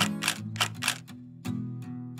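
Background music: acoustic guitar strummed in chords, each stroke ringing on.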